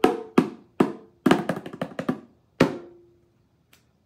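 Bongos played by hand: about six separate strikes in the first three seconds, slowing after a fast roll, the last one left ringing with a low tone.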